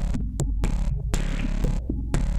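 Minimal electro track: a deep, steady synth bass under a hissing noise sound that swells and cuts off about once a second, with a few sharp clicks.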